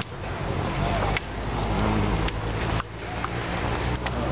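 Street noise around a car burning in the road: a steady low rumble of idling vehicle engines under a dense rushing noise, with a few sharp pops.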